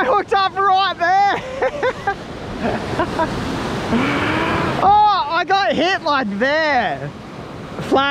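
Excited wordless shouting in quick bursts, near the start and again from about five seconds in, as a fish strikes the lure. Surf washes up the beach between the bursts.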